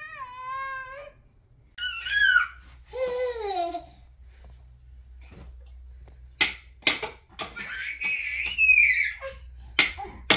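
A toddler squealing and calling out in short gliding bursts, with a long high wavering squeal in the second half. A few sharp taps are mixed in.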